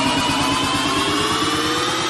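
Big-room EDM build-up: a buzzing synth rising steadily in pitch over a fast, even pulsing beat.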